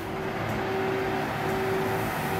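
Steady recorded car-engine sound from the Playmobil Porsche 911 Targa 4S toy's sound function, playing as the toy car is driven off.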